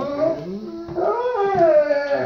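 Golden retriever 'talking': a long, drawn-out howling vocalisation that climbs in pitch and then slides back down. The dog is asking to be let out to pee.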